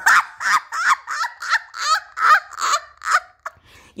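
A woman laughing hard in rapid bursts, about three or four a second, trailing off near the end.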